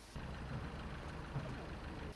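Truck engine running, a low rumble.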